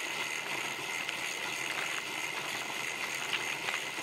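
Steady hiss of wind and tyre noise picked up by a camera mounted on a moving road bicycle, with a faint high whine under it and a few light clicks.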